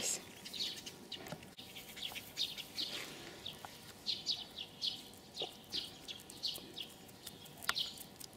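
Small birds chirping in the background: a steady run of short, high, falling chirps, faint throughout. A single sharp click about a second and a half in.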